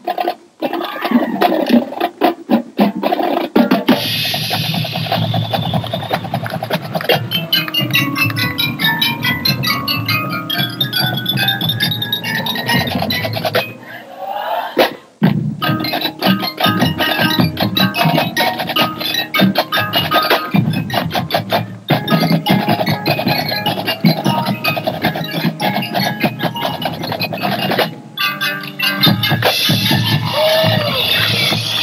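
Marching band playing its field show: a snare drumline with rapid strokes at first, then the full band of brass and woodwinds coming in about four seconds in over the drums, with a short drop in sound near the middle.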